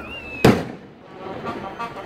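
A single loud firework bang about half a second in, fading away over about half a second, typical of the cohete skyrockets let off during a Mexican fiesta procession.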